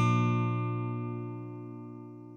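Closing music: the last guitar chord rings out and fades away.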